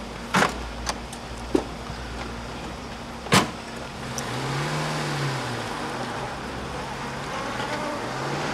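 A small car's door clicking and then slamming shut about three and a half seconds in, followed by its engine running and revving up and easing off as the car pulls away.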